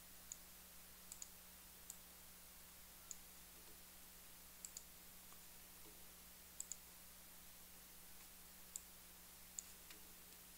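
Faint computer mouse clicks, some in quick press-and-release pairs, scattered over a low steady hiss and electrical hum.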